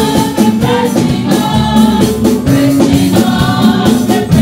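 Gospel choir of mixed men's and women's voices singing, accompanied by keyboard and a steady drum beat.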